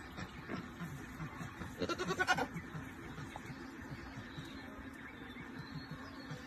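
A young goat bleats once, a short quavering call about two seconds in.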